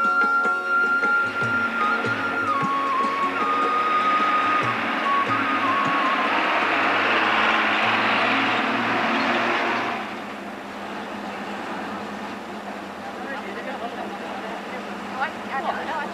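A bus approaching on a road, its engine and tyre noise growing louder to a peak about eight seconds in, while a flute melody fades out in the first few seconds. At about ten seconds it drops suddenly to a lower, steady hum.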